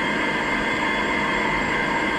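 Quadcopter drone's motors and propellers running in flight, a steady whirring hum with a held high whine and no change in pitch.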